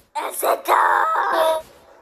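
A person's voice making wordless vocal sounds: a short one, then a longer drawn-out one lasting about a second.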